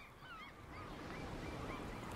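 A flock of birds calling, many short calls that rise and fall in pitch, one after another, over a steady wash of water that grows louder about half a second in.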